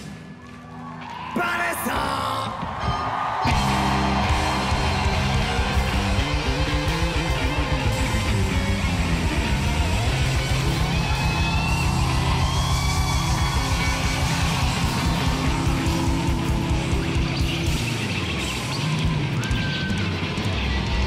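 Live punk rock band with drum kit and electric guitars. After a short quieter moment at the start, the band comes back in loud about two seconds in. It then drives on with a fast, steady beat.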